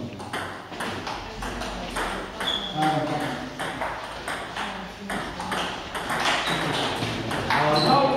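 Table tennis balls being struck by paddles and bouncing on the tables in quick, irregular clicks during doubles rallies, with men's voices talking underneath.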